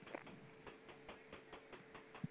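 Near silence on a telephone line: faint, irregular clicks over a faint steady hum.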